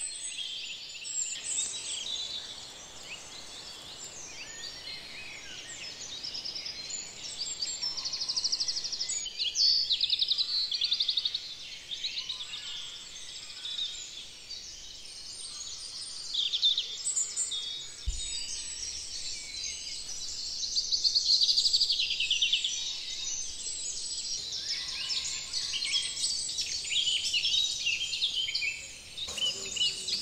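Woodland dawn chorus: many songbirds singing at once, dominated by blackbird and thrush song, with the small twittering songs of wrens and robins woven through.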